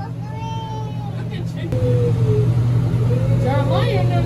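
A steady low hum inside an enclosed observation-wheel gondola, with faint voices over it.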